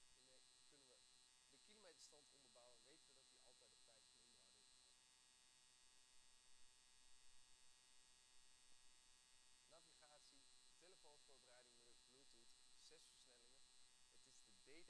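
Very quiet steady electrical hum with a faint high whine, with faint speech in two short stretches.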